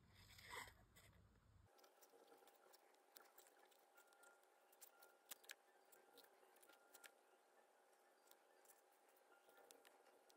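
Near silence with faint, scattered sharp clicks of small craft scissors snipping thin cardstock, the cutting sped up.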